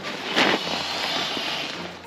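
Rustling of a nylon stuff sack handled close to the microphone: a sharp rustle about half a second in, then a steady hiss of rubbing fabric.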